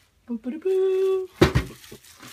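A woman's drawn-out "oops", then a single thump about a second and a half in as something is knocked over, making a mess.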